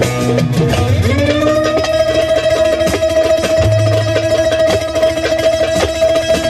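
Instrumental Turkish folk music: an amplified bağlama (long-necked saz) played with fast strumming, over a low drone. About a second in, a long steady note rises into place and is held.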